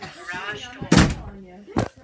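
Knocking on wood: one loud knock about a second in and a second, lighter knock near the end.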